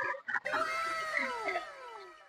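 Several overlapping whistle-like tones slide downward in pitch over a faint hiss, starting about half a second in and fading near the end. It sounds like a cartoon-style falling-whistle sound effect added in editing.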